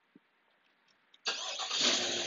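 2021 Chevy Tahoe High Country's engine starting just over a second in, then running on at a steady idle.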